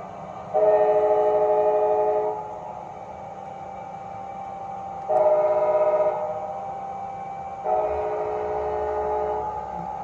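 Sound-decoder horn of an HO-scale model locomotive playing through its small speaker: three chord blasts, long, short, long, closing a long-long-short-long grade-crossing signal. A steady mechanical hum runs underneath between the blasts.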